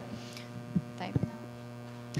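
Steady electrical mains hum in the microphone and sound system, with a few faint short clicks about a second in.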